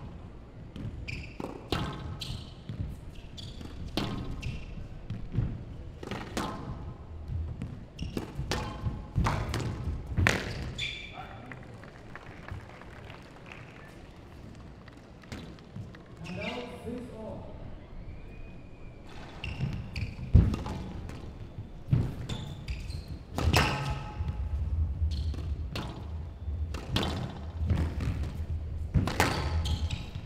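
Squash rallies: the ball cracks sharply off rackets and the court walls at an irregular pace, each hit echoing in the hall.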